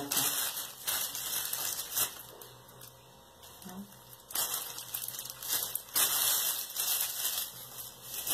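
Clear plastic bag crinkling and rustling as a lump of white modeling paste is handled and pulled out of it, in two spells with a quieter lull in the middle.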